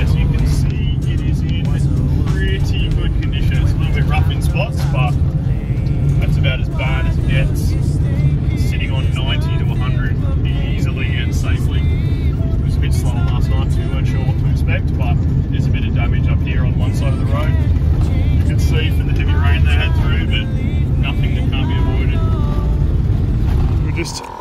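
Steady, loud low rumble inside a Nissan Elgrand van's cabin as it drives on a dirt road, with tyre and road noise mixed in.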